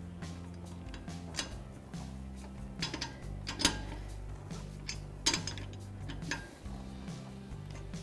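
Several sharp metal clicks and clinks as a lug wrench is fitted to and turns the lug nuts on a steel spare wheel, the loudest about three and a half seconds in, over quiet background music.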